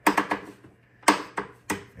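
Sharp mechanical clicks from a rotary selector switch that switches between radios being turned by hand: a quick run of clicks at the start, then three more spaced out about a second in.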